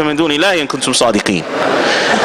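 Speech only: a man's voice through a microphone and loudspeaker, drawn out with gliding pitch, fading about one and a half seconds in.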